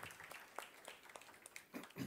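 Audience applause in a lecture hall: scattered hand claps that thin out and die away.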